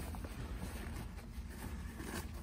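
Faint handling noise from a nylon tennis bag: light rustling and small clicks as a shoulder-strap clip is worked loose by hand, over a low steady room hum.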